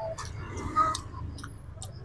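A person chewing fried duck, with several short wet mouth clicks spread through the two seconds.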